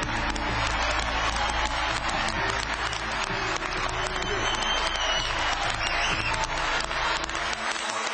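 A large crowd applauding, with background music underneath that stops shortly before the end.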